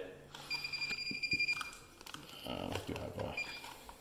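NAPCO iSecure wireless LCD keypad giving one steady, high-pitched beep about a second long as its reset key is pressed.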